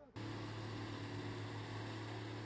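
Steady low engine hum over a wash of road noise, cutting in abruptly a fraction of a second in.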